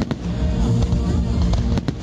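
Fireworks bursting over music: a sharp bang just after the start and two more in quick succession near the end, with steady music running underneath.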